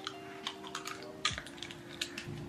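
Quiet, irregular small clicks and taps over a faint steady hum.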